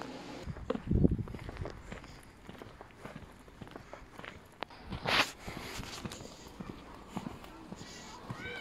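Outdoor ambience recorded on the move. Scattered soft knocks run through it, with a loud low thump about a second in and a brief sharp noise about five seconds in.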